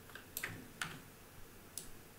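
A handful of sharp, irregularly spaced clicks from a computer keyboard as text is edited.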